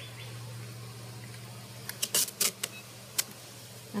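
Decorative duct tape being pulled off its roll in a few short, crackling tugs, about halfway through, with one more near the end, over a faint steady low hum.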